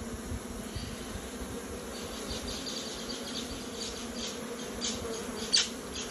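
Honey bees buzzing in a steady hum at the entrance of a busy hive. A run of light ticks comes in the second half, and one sharper click near the end.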